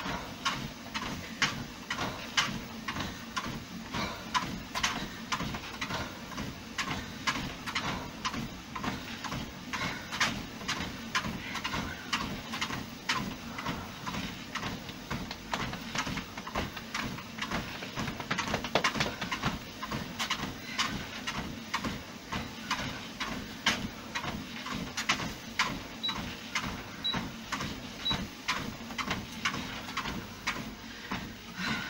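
Regular footfalls on a Fitnord treadmill belt over the treadmill's steady running hum. Near the end come three short high beeps about a second apart from the treadmill console.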